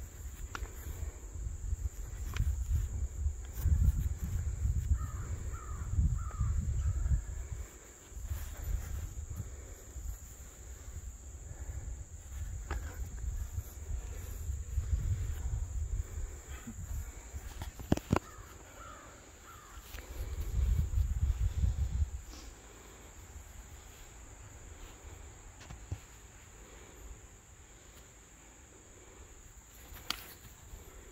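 Outdoor ambience: a steady, high-pitched insect drone runs throughout, with a bird calling a few times near 5 and 19 seconds. Low rumbling, wind on the microphone, comes and goes through the first two-thirds, and a single sharp smack sounds about 18 seconds in.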